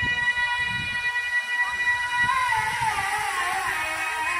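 A muezzin's voice chanting the sela from a minaret's loudspeakers. He holds one long high note, then about two and a half seconds in breaks into a wavering run that slides downward.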